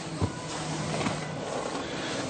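Steady background hiss with a faint low hum between spoken sentences: room tone.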